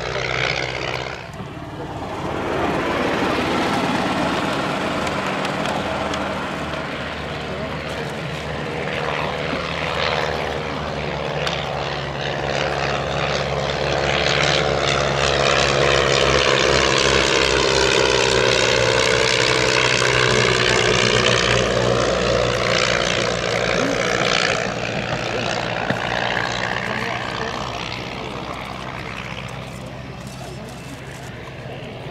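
Piston engines and propellers of a Blackburn B-2 and a de Havilland DH60X Moth biplane flying together. The sound swells to its loudest about halfway through, with a sweeping, swirling shimmer as the aircraft pass close by, then fades near the end.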